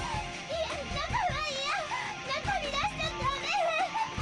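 Lo-fi noisecore recording: dense distorted noise with high-pitched, wavering voice-like sounds over it, with no clear words.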